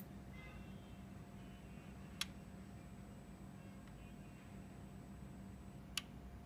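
Quiet room with a faint steady low hum, broken by a single sharp click about two seconds in.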